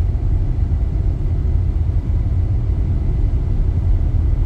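Steady low road rumble inside a Tesla's cabin, cruising at about 80 km/h.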